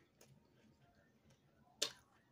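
Quiet eating with a plastic spoon from a plastic tub: faint small sounds, then one sharp click near the end.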